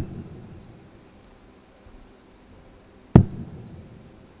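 Two steel-tip darts thudding into a Unicorn bristle dartboard, one right at the start and the second about three seconds later, each followed by a short echo.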